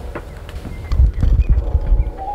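A quick run of loud, dull low thumps starting about a second in, as someone walks up close to the camera on a wooden floor and takes hold of it.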